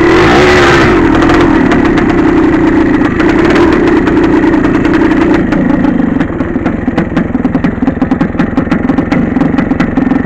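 Two-stroke dirt bike engine running through a shallow creek crossing, with water splashing in the first second. From about six seconds in it drops to a pulsing idle.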